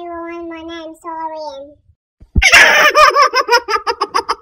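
A woman's voice held on a high, steady note in two short stretches, then, after a brief pause and a soft bump, loud rapid giggling laughter.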